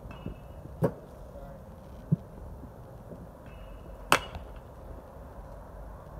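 Baseball bat striking pitched balls in batting practice: two sharp cracks about three seconds apart, the second the louder, with a duller thud between them.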